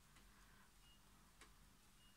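Near silence: quiet room tone with two faint ticks, one just after the start and one about a second and a half in.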